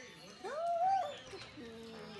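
A dog whines once, a single smooth whimper about half a second in that rises and then falls in pitch and lasts under a second.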